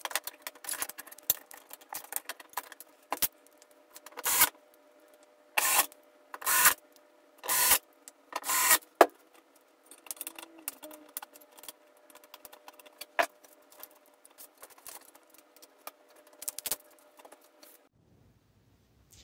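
Hands handling the TV's wiring harnesses and board connectors while swapping the mainboard: scattered clicks, rattles and rubbing of cables and plastic plugs, with about five short, louder bursts of noise roughly a second apart in the middle.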